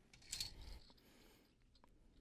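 A plastic Connect Four checker dropped into the upright grid, a short faint clatter about half a second in, followed by a few fainter clicks.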